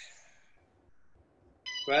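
A man's voice trailing off, then about a second of near silence, then a brief high-pitched sound just before speech resumes.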